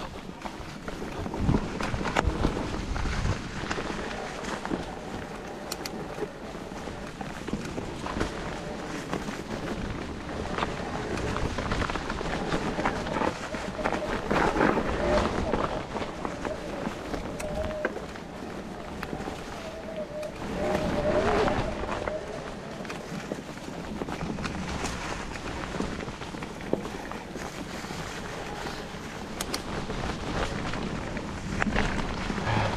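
Mountain bike rolling over a dirt trail thick with dry fallen leaves: continuous tyre noise through the leaf litter with the clicks and rattles of the bike over bumps, louder in stretches.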